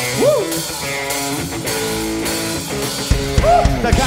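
Live band playing a hip-hop track's intro: electric guitar chords over keyboard, with the kick drum coming in with heavy beats about three seconds in.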